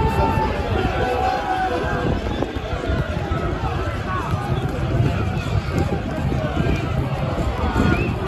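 Football crowd in the stands, many voices shouting and singing at once just after the home side's second goal, with wind rumbling on the microphone.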